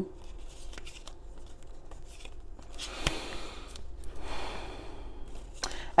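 Tarot cards being handled and shuffled: soft rustling and sliding of the deck in two short spells, with a light click about three seconds in.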